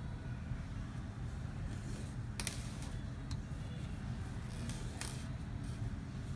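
Embroidery needle and three-strand floss drawn through fabric held in a hoop, giving a few soft rasps at about two and a half, three and five seconds in, over a steady low background hum.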